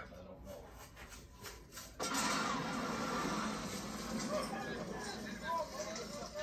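Soundtrack of a war documentary playing from a television in the room. It is quieter at first, then about two seconds in it turns suddenly into a louder, dense noisy passage that carries on.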